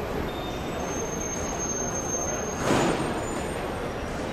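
Steady background hubbub of an airport terminal, with one short, loud hiss about three-quarters of the way through.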